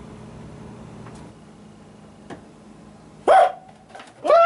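A man's brief startled vocal outburst about three seconds in. Before it there is a low steady hum and two faint clicks.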